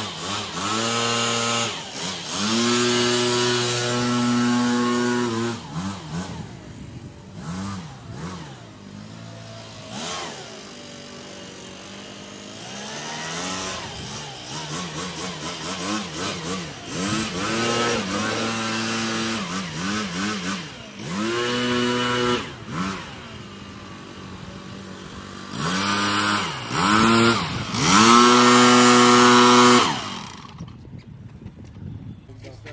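Small two-stroke engine of a Stihl backpack leaf blower, throttled up to full speed in repeated bursts of a few seconds and dropping back between them, the pitch swinging up and down. The longest, loudest burst comes near the end.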